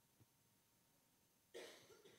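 Near silence in a room, then one short, faint cough from a person about one and a half seconds in.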